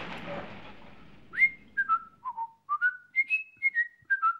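A rumbling noise dies away over the first second, then a person whistles a short tune of about ten quick notes that rise and fall, each note sliding up into place.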